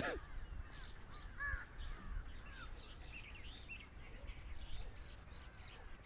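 Many faint bird calls, short chirps scattered throughout, over a steady low background rumble, with one brief louder call at the very start.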